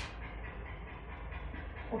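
Steady low electrical hum of room noise, with faint scratching of a marker writing on a whiteboard.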